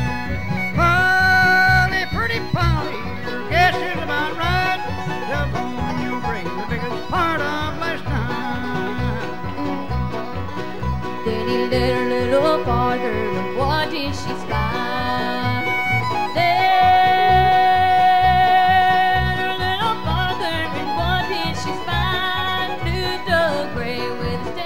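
Bluegrass band playing an instrumental break: banjo, fiddle, guitar and upright bass over a steady bass beat, with sliding fiddle notes.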